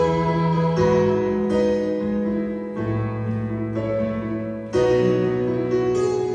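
Electronic keyboard with a piano voice playing sustained chords over a moving bass line, a new chord struck every second or so, as an instrumental passage with no singing.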